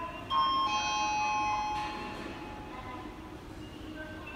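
Electronic chime over a subway station's public address: several bell-like tones start suddenly and ring for about a second and a half, then fade out. It is the kind of chime that precedes an arriving-train announcement.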